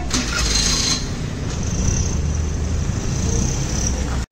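Steady outdoor street ambience of road traffic: a continuous low rumble with a faint high steady tone over it.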